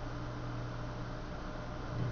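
Room tone: a steady low hum with an even hiss underneath, unchanging throughout.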